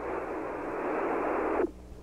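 Steady radio hiss on the 1962 Mercury-Atlas 7 air-to-ground radio link, narrow like a voice channel. It switches on abruptly and cuts off about one and a half seconds in, just ahead of the next transmission.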